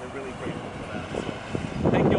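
A pickup truck towing an empty flatbed trailer drives past on the road, getting louder near the end.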